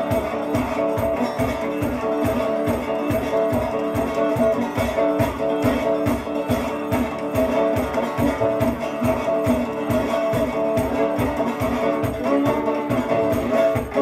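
Instrumental blues on a dobro played lap-style with a slide, over a steady, fast stomp-box beat with a foot tambourine keeping time.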